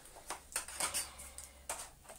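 A few faint clicks and scrapes of a metal vacuum-cleaner extension wand being pushed against and handled at its plastic floor-tool and hose fittings. The replacement tube is the wrong size and doesn't fit.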